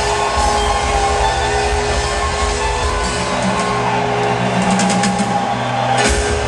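A live rock band playing loudly, recorded from the audience in an arena.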